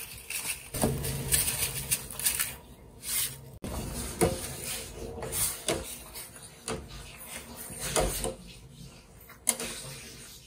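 Metal ladle knocking and scraping against a stainless steel saucepan as salt is stirred into boiling water, about one knock a second at an uneven pace, over the bubbling of the water.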